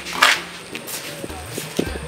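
A woman's short, sharp breathy exhale just after the start, followed by a few faint light taps.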